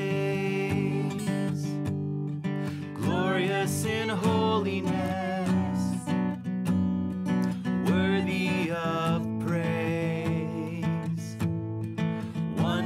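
An acoustic guitar strummed as accompaniment to a man and a woman singing a worship song together.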